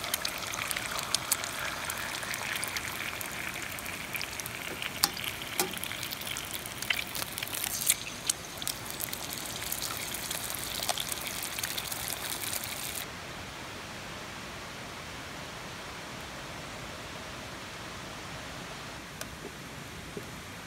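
Eggs frying in hot oil in a cast iron skillet, sizzling with many sharp crackles and pops. About two-thirds of the way through the sizzle cuts off suddenly, leaving only the steady rushing of a fast-flowing river.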